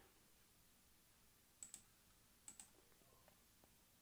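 Faint computer mouse button clicks, two quick pairs about a second apart, over near silence.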